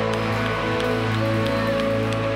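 Live worship band music, mostly sustained held chords with guitar.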